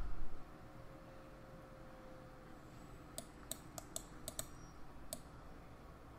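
Quiet clicking at a computer: about eight sharp, irregularly spaced clicks starting about halfway through, over low room noise.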